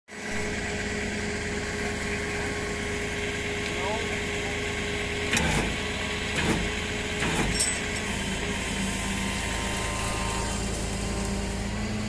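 Tow truck's engine running steadily, with three short knocks about halfway through.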